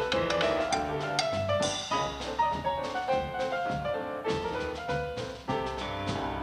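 Grand piano played in a lively traditional jazz style, with a drum kit keeping time behind it.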